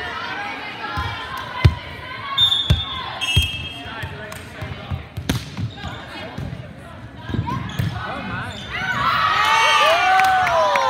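Volleyball rally in a large gym: four sharp ball contacts over a few seconds, a couple of short high squeaks, and players calling out. Near the end, several girls' voices break into shouting and cheering as the point ends.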